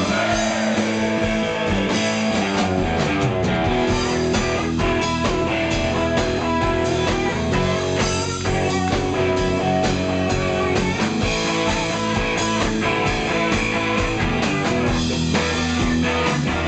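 Live rock band playing loudly: electric guitars to the fore over a drum kit.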